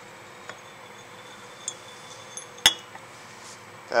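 Glassware clinking as a glass pipette and Erlenmeyer flask are handled on the lab bench: a few faint ticks, then one sharp glass clink with a brief ring about two and a half seconds in.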